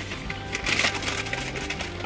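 Paper food bag and wrapper crinkling as they are handled, over soft background music.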